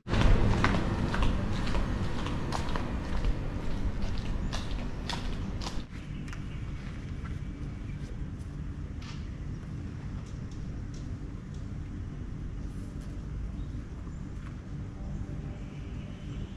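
Footsteps in flip-flops slapping on tiled paving, a string of sharp clicks over a low rumble for about the first six seconds. After a sudden drop there is a steadier, quieter low outdoor background with a few faint ticks.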